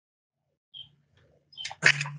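Dead silence, then the conference audio feed coming back on: a short high chirp, a low steady electrical hum, and a few sharp clicks near the end as the room microphone is opened.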